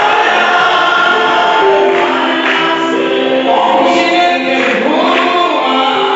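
Congregation singing a gospel hymn together, led by a vocalist singing into a microphone over the loudspeakers, in long held notes.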